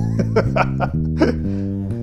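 Electric bass playing a sequential arpeggio exercise, single sustained notes changing about twice a second. A man laughs over the notes in the first half.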